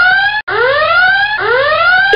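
Whooping alarm siren: a pitched tone that rises over just under a second, repeating back to back.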